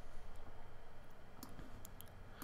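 A couple of faint, sharp clicks from a computer mouse or keyboard as text is selected, over low background noise.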